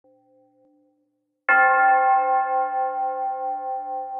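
A faint ringing tone in the first second, then a single loud bell strike about a second and a half in, whose ring carries on through the rest of the clip with a slow, pulsing fade.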